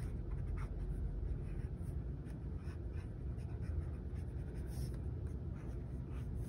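Ecoline brush pen stroking across sketchbook paper: a run of soft, irregular scratchy strokes.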